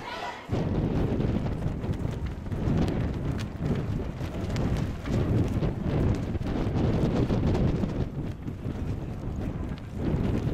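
Wind buffeting the camcorder's microphone: a low, gusting rumble that begins after a brief dip about half a second in.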